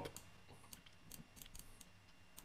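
Near silence with a few faint, scattered clicks from a computer mouse while text is resized.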